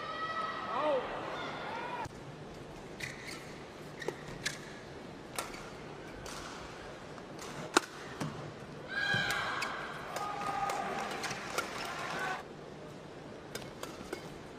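Badminton rally: rackets striking the shuttlecock with sharp cracks at uneven intervals, the loudest just before halfway, alongside squeaking of players' shoes on the court mat.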